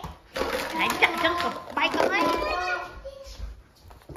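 Children's high-pitched voices shouting excitedly, the words not made out, dying down in the last second.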